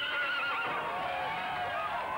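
Horse whinnying at a rodeo chute, several drawn-out wavering calls overlapping one another.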